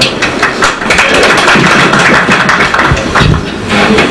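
An audience applauding, a dense run of many quick claps, with a few heavier thumps near the end.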